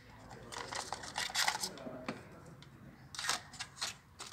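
Cardboard iPhone box and its inner tray being handled as the contents are lifted out: irregular rustling and scraping with a few sharp clicks near the end.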